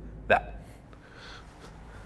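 A single short vocal sound from a man, a clipped grunt or catch of breath about a third of a second in. After it comes faint rustling of clothing against a rubber gym mat as he shifts his body.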